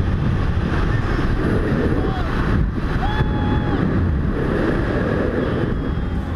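Wind buffeting the microphone of a rider-mounted camera during a fast zip-wire descent, a dense low rush. A short, faint steady tone sounds about three seconds in.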